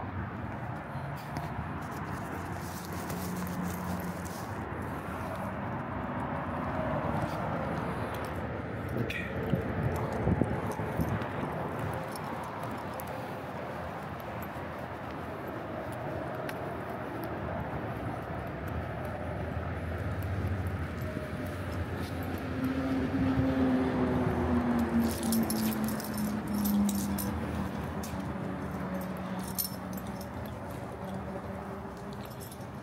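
Outdoor ambience with light metallic jingling from a dog's leash clip and harness tags. A low pitched hum slides down in pitch about two-thirds of the way through.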